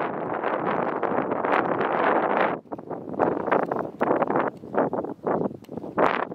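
Wind buffeting the microphone: a steady rush for about the first two and a half seconds, then breaking up into irregular gusts with brief lulls between them.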